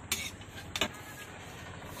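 A metal spoon taps twice against a steel plate as chickpea curry is served onto it, over a steady low rumble.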